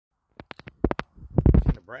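Handling noise on a phone's microphone as the recording starts: a string of short clicks, then a louder low rumbling burst. Speech begins right at the end.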